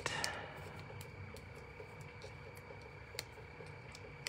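Faint, scattered small ticks of fingers handling paper as foam adhesive dimensionals are peeled off and pressed onto a small piece of cardstock, over a faint steady high-pitched background tone.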